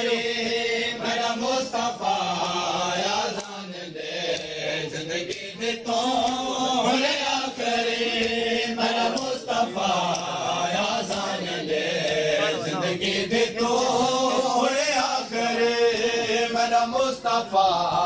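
Men chanting a Shia noha, a Muharram lament, in slow rising and falling phrases over a loudspeaker system. Sharp slaps of chest-beating (matam) come at irregular intervals.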